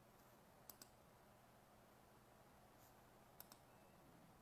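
Near silence with two faint double clicks, about three seconds apart, over a faint steady low hum.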